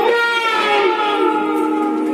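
Harmonium drone holding a steady chord of several tones, with no melody or drumming over it; a higher fading line dies away in the first second.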